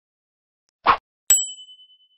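A brief swish, then about half a second later a single bright, high-pitched ding that rings out and fades: an edited whoosh-and-chime transition effect.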